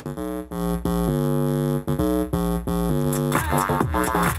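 Electronic bass line: a sampled bass loop from Kontakt layered with a synth underneath for bottom end, playing held notes rich in overtones that change pitch every half second to a second over a deep sub. Near the end the sound turns wavering and gliding.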